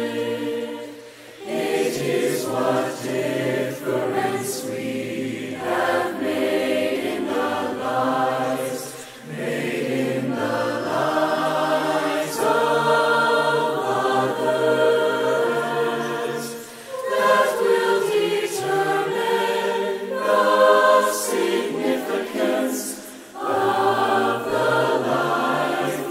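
Mixed SATB choir of teenage voices singing a cappella in sustained chords, with no instruments; the voices are separately recorded tracks mixed into one choir sound. The singing runs in long phrases with brief pauses between them.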